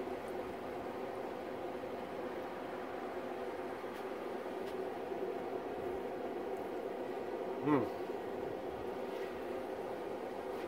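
A steady mechanical hum made of several even tones, with a few faint clicks; about three-quarters of the way through a man lets out a short, appreciative 'mmm'.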